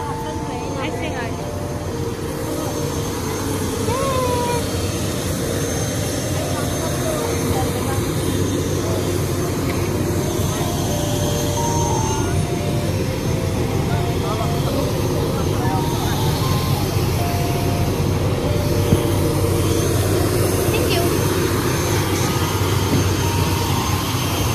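Aircraft engines running: a steady rumble and rush that grows slowly louder, with people's voices around.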